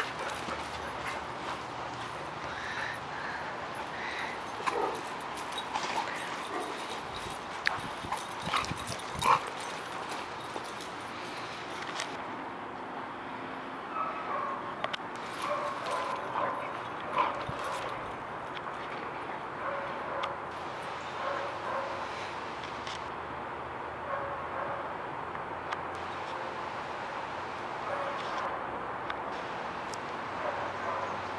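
A pit bull-type dog at play with a rubber toy, making occasional short vocal sounds amid scuffs and knocks, which are loudest in the first ten seconds.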